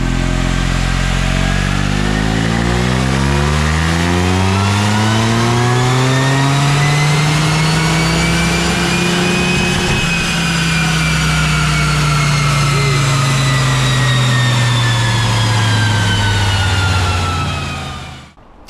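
Toyota GR Yaris's turbocharged 1.6-litre three-cylinder engine on its tuned map making a full-throttle pull on a chassis dyno. The engine note climbs steadily for about ten seconds up toward the top of the rev range, then winds down slowly as the car coasts on the rollers.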